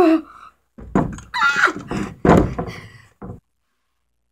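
Thumps, knocks and clatter of a metal-framed chair banging about close to the microphone as someone wriggles in it. The sound cuts off abruptly about three and a half seconds in.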